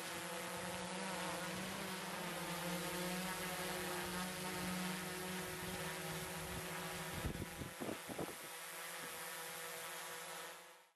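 DJI Mavic 2 Zoom quadcopter hovering close by, its propellers giving a steady buzzing whine. A few brief low thumps come about seven to eight seconds in.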